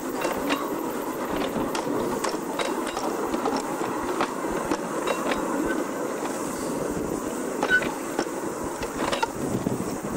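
Steel wheels rolling along railway track: a steady rumble with irregular clicks and knocks as the vehicle moves.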